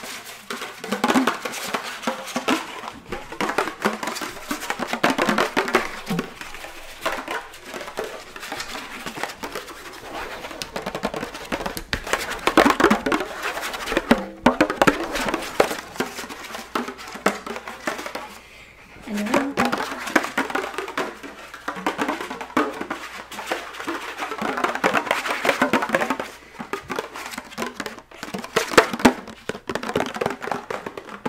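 Fingertips tapping fast on the heads of a pair of small toy hand drums with plastic rims, in quick rattling runs with a brief lull a little past the middle.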